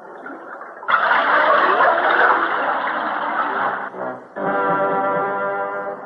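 A loud rushing, bubbling sound effect starts suddenly about a second in and lasts about three seconds. After a brief dip, a sustained brass chord from the cartoon's score holds through the end.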